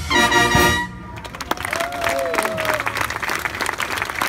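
A town brass band holds the final chord of a march for about a second and cuts off, then the audience breaks into applause, with hand claps close by.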